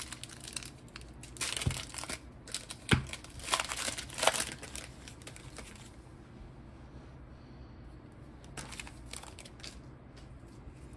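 A Pokémon trading-card booster pack's foil wrapper crinkling and tearing as it is opened, with two sharp clicks in the first few seconds. It goes quieter about halfway through, leaving soft rustles as the cards are handled.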